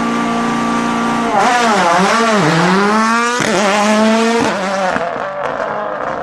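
A rally car's engine holds steady revs, then about a second and a half in its revs dip and climb several times with tyre noise over the top. It fades near the end.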